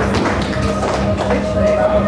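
Live band's amplified instruments sounding on stage before a song: a steady held tone comes in about halfway through over a low hum, with scattered taps and crowd noise.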